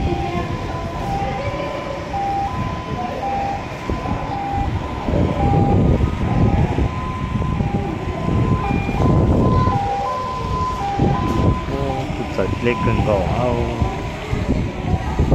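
Wind buffeting the microphone in gusts. Behind it, a two-note tone alternates between a higher and a lower pitch in short, uneven steps. Voices come in near the end.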